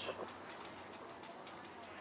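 Faint outdoor background, a low steady hiss, with a faint bird call, tagged as a dove cooing.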